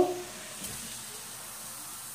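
Baking soda and white vinegar reacting in a cup, a steady fizzing hiss as the mixture foams up fast.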